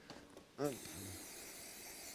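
MOST aerosol brake cleaner spraying through its extension straw onto a motorcycle's front brake caliper and pads, a steady hiss that starts about half a second in. It is washing off brake fluid spilled during the brake bleed.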